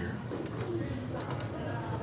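Faint, indistinct talking with a low steady background hum and a few light clicks.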